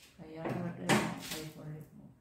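A person's voice talking, with a single sharp knock about a second in.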